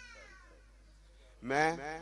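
A man's voice, drawn out and rising in pitch, comes in loudly about one and a half seconds in on the word "main"; before that only a faint falling vocal glide fades into quiet room tone.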